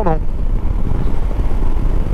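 Steady low rumble of a motorcycle being ridden: engine and road noise mixed with wind on the microphone.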